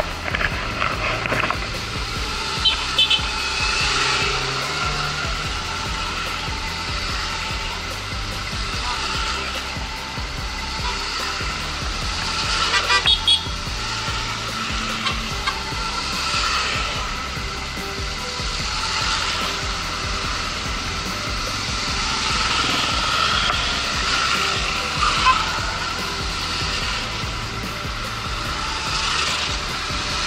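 A column of motorcycles riding past one after another, engines running steadily, with brief louder moments about three seconds in and again around thirteen seconds.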